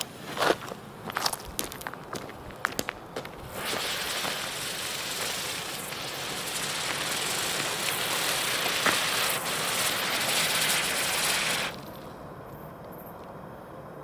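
Comet Silberwirbel spinner firework: the lit fuse crackles and spits for about three seconds, then the spinning charge gives a steady, loud hiss for about eight seconds that cuts off suddenly as it burns out.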